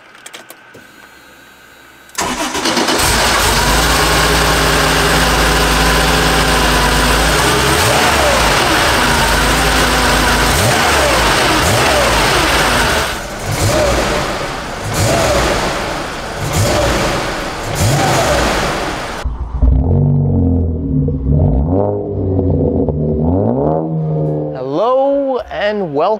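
The air-cooled 3.2-litre flat-six of a 1979 Porsche 911 SC, fitted with individual-throttle-body EFI, starts with a sudden catch about two seconds in and runs steadily. From about halfway it is revved in repeated throttle blips that rise and fall, then runs quieter in the last few seconds.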